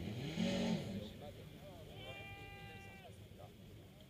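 Distant drag car engine revved once, rising and falling in pitch in the first second, then holding a steady, higher note for about a second.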